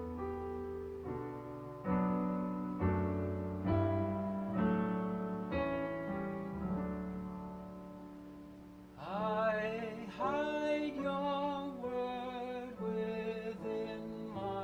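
Digital piano playing a slow hymn in full chords, struck about once a second. About nine seconds in, a man's voice joins, singing the melody over the piano.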